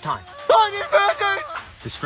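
A high-pitched voice speaking over background music.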